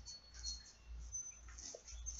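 Quiet background with a steady low hum and a few faint, thin high-pitched chirps.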